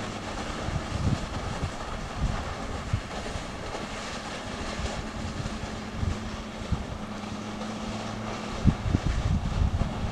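Wind buffeting the microphone in irregular gusts, over a steady rushing hiss, with a few stronger bumps near the end.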